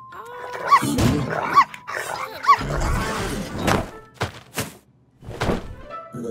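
Cartoon sound effects over background music: three short rising electronic chirps, then about four sharp thuds as cardboard boxes tumble down onto the robot.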